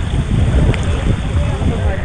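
Wind buffeting the microphone with a heavy, uneven low rumble, over faint background chatter of people in a swimming pool.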